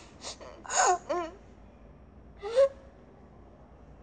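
A young girl's short breathy vocal sounds about a second in, then one sharp rising gasp about two and a half seconds in.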